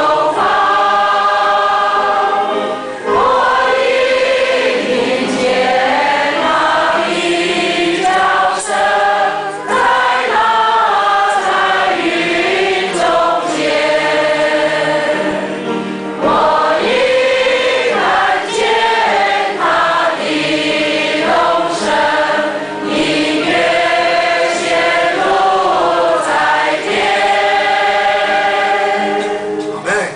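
A congregation of men and women singing the first verse of a Chinese hymn together, in sustained phrases with brief breaths between lines.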